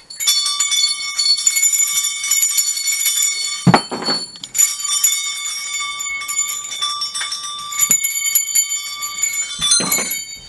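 Small bells shaken and ringing, many overlapping high tones struck again and again. The ringing breaks off briefly about four seconds in, where a short low sound is heard, then resumes.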